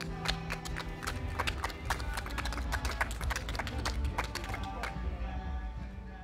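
The last acoustic guitar chord rings out and fades within the first second, followed by scattered, uneven hand clapping from a few listeners over a low wind rumble.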